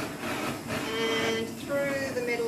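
A woman's voice making two drawn-out, high, steady-pitched vocal sounds, the first about half a second in and the second near the end, with no clear words.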